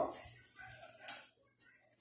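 Light handling noises at a table: rustling, with a short clink about a second in and another brief knock a little later, as cables are set down and a cardboard box is taken up and opened.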